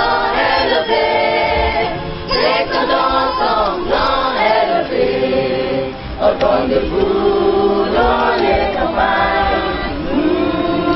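Mixed youth choir singing a national anthem unaccompanied, in long held notes.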